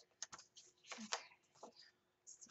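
Loose paper planner pages being handled: a few short rustles of paper with light clicks and taps, the loudest a little after a second in.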